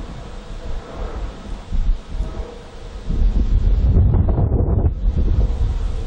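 Wind buffeting the microphone with a low rumble that swells about three seconds in and eases off near five seconds.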